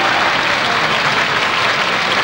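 Audience applauding steadily after an orchestral song ends.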